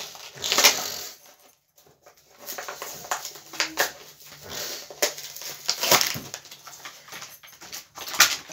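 A small collectible toy can being opened and its packaging handled: an irregular run of clicks, scrapes and rustling, with a short pause about a second and a half in.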